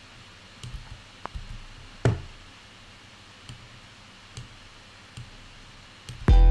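A handful of scattered computer mouse clicks over faint room hiss, the loudest about two seconds in.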